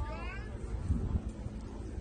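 Low wind rumble on the microphone, with a brief high, wavering cry right at the start that bends up and down in pitch.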